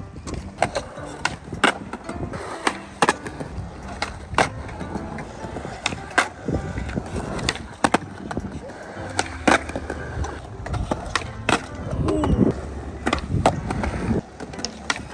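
Skateboard wheels rolling on smooth concrete, with repeated sharp knocks of the board and wheels hitting the ground, about one or two a second, irregularly spaced.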